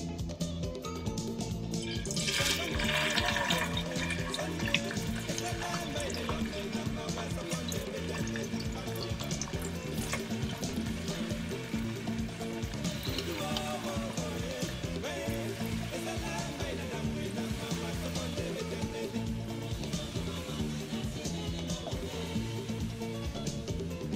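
Tilapia fillet pieces sizzling in hot oil in a frying pan as they are laid in, with the sizzle starting about two seconds in, under background music.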